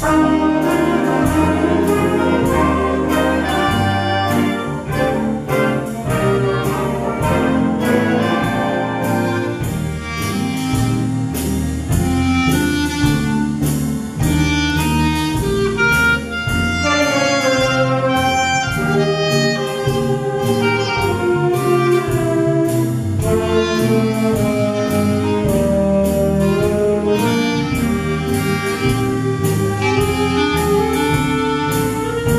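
Amateur swing orchestra of saxophones, brass and rhythm section starting a tune together, with a solo clarinet playing the melody over the band and a steady beat of about two a second.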